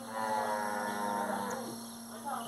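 A cow bellowing: one long moo of about a second and a half that drops in pitch at the end.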